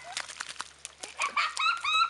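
Soft wet squelches and splats of a puppy's paws in mud, then, from a little past halfway, a run of short, high-pitched calls of uncertain source.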